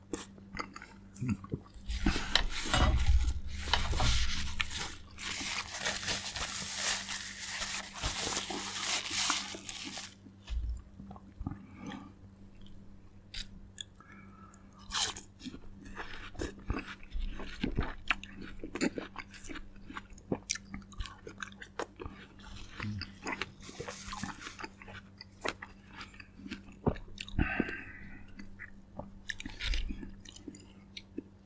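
A person biting and chewing fresh fruit. The first several seconds hold a long, loud, dense stretch of chewing, followed by softer chewing with many sharp little mouth clicks.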